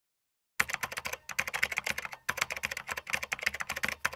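Rapid typing on a computer keyboard: a fast run of key clicks starting about half a second in, broken by two short pauses.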